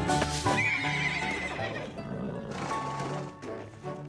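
A horse whinnies once, a wavering call starting about half a second in and lasting about a second, over background music with long held notes.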